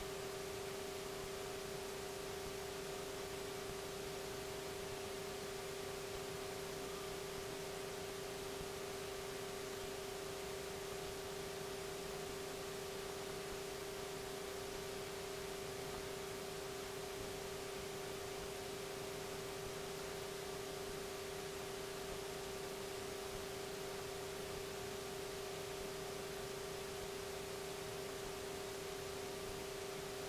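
Steady aircraft cabin noise as heard through the cockpit intercom feed: an even hiss under a hum held at one unchanging pitch, with the PA46 Meridian's turboprop running at constant power.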